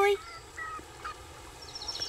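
Birds calling in the background: a few short calls, then near the end a fast, high-pitched trill of rapidly repeated notes.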